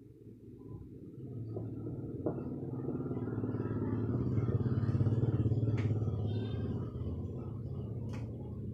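A motor vehicle engine, a low hum that swells over several seconds and eases off slightly near the end, as of a vehicle passing close by. A single sharp click sounds about six seconds in.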